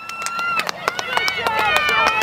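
Sideline voices shouting: a drawn-out call at the start, then more calls, over a scatter of sharp clicks.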